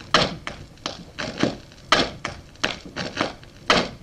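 Irregular series of about a dozen sharp knocks and clicks, roughly three a second, each with a short ringing tail, from a gramophone turntable played as an improvised instrument.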